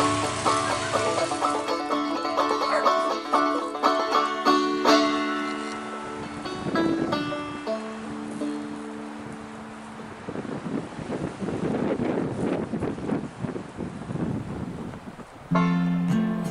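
Banjo music, a run of quick plucked notes that thins out and stops about eight seconds in. Then a few seconds of irregular crunching footsteps on dry grass and gravel, and just before the end an acoustic guitar tune starts.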